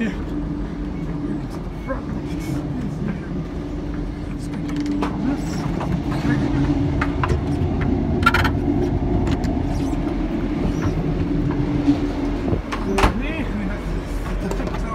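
Cabin noise inside a moving Class 150 diesel multiple unit: a steady engine and transmission drone over the rumble of the wheels, which drops away near the end. A few sharp clicks and knocks cut through, the loudest about eight seconds in and about thirteen seconds in.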